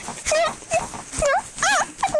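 High-pitched, wordless whiny squeals from a person's voice: a string of short wavering cries, with a longer rising-and-falling whine near the end.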